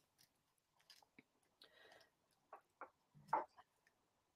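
Near silence with a few faint clicks and a soft rustle of a card-and-plastic needle package being handled, and one brief louder sound a little after three seconds in.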